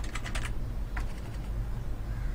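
Computer keyboard typing: a few quick keystrokes at the start and a single keystroke about a second in, over a steady low hum.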